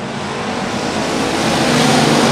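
Engines of a pack of factory stock dirt-track race cars running at racing speed, growing steadily louder.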